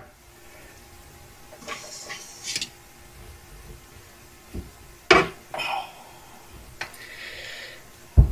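Handling noise from a camera being picked up and moved: a few scattered knocks and rustles, the loudest a little after five seconds in.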